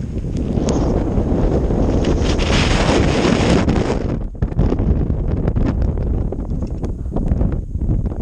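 Strong wind buffeting the camera microphone. It eases suddenly about four seconds in, and a run of short clicks and crackles follows.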